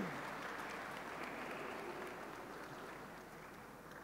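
Audience applauding, the clapping fading away gradually over the seconds.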